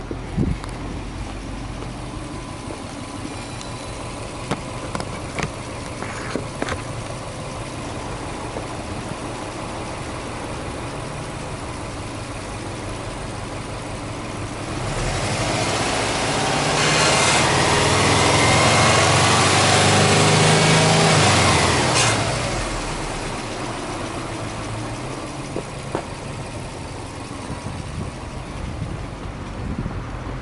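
Subaru Impreza WRX STi's turbocharged flat-four boxer engine idling, then revved up and held at higher revs for about seven seconds in the middle before dropping sharply back to idle. A few light clicks near the start.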